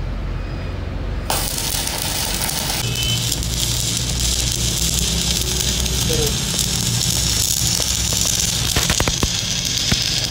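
Shielded metal arc (stick) welding on a steel camshaft: the arc strikes about a second in and then runs with a steady crackling hiss, with a few sharper pops near the end. This is the weld being laid to rebuild the broken shaft.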